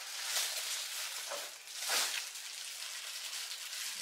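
Thin plastic bag rustling and crinkling as it is pulled open and lifted, with a louder rustle about two seconds in.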